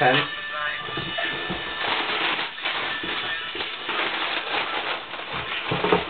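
Background music with a vocal line playing steadily, with some rustling of a cardboard shoebox and its tissue paper being handled.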